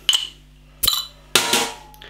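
A metal bottle opener levering the crown cap off a glass beer bottle. There is a metallic click as it catches, a sharp pop as the cap comes off just under a second in, then a brief hiss of escaping carbonation gas.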